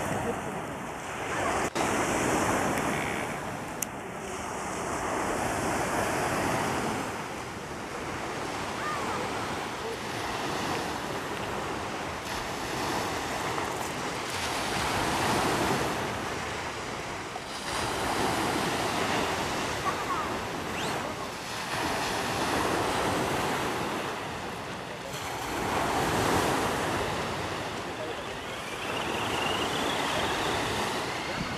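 Small sea waves breaking and washing up a gravelly beach, the surf swelling and fading every four to six seconds.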